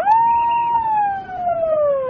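A siren wailing in repeated cycles: each cycle jumps up quickly to its top pitch, holds briefly, then slides slowly down, one cycle about every two seconds.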